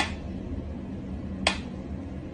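Mechanical pendulum metronome ticking at a slow tempo: two sharp ticks about a second and a half apart, over a low steady hum.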